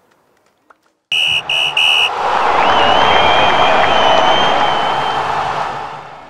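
Referee's whistle blown three short times in quick succession for full time, followed by loud cheering and applause with a long, high whistled note over it.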